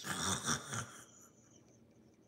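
A woman laughing under her breath, lasting about a second.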